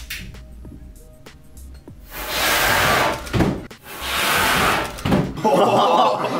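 Dried pyrotechnic paste from a firework rocket's fuse end burning off fast in a short, loud rushing hiss, heard twice, about two seconds in and again about four seconds in, each lasting just over a second. It is thought to be an igniter mix whose quick, strong burn makes sure the propellant charge catches. Background music comes in near the end.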